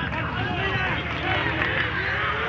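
Several footballers' voices shouting and calling on the pitch at once, overlapping, over a steady low rumble of open-air stadium noise.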